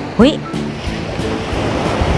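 Sea surf washing onto a sandy beach, a rushing hiss that builds through the second half, over steady background music.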